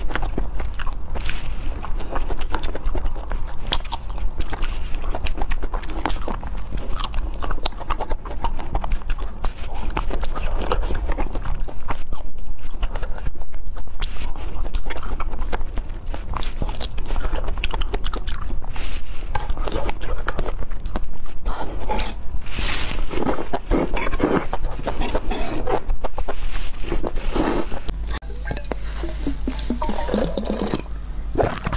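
Close-miked chewing and biting: wet mouth sounds of strawberries being eaten, a dense run of crisp clicks and smacks that goes on without a break.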